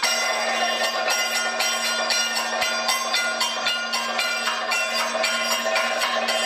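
Kathakali accompaniment: bell-metal cymbals struck in a quick, even rhythm, several strikes a second, each ringing on over a steady low drone.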